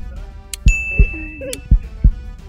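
Game-show countdown sound effects: a low heartbeat-like double thump repeating about once a second, with a bright ding that rings for about a second partway through.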